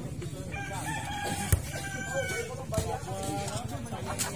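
A rooster crowing, a drawn-out call lasting about two seconds, with sharp smacks of a volleyball being hit; the loudest smack comes about a second and a half in.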